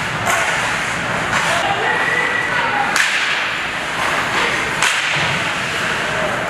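Ice hockey play: skates scraping the ice and sharp cracks of sticks on the puck and against the boards, four of them, the sharpest about three seconds in, over steady rink noise.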